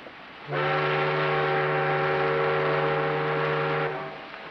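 A steamship's whistle blowing one long, steady blast that starts about half a second in and stops just before the end.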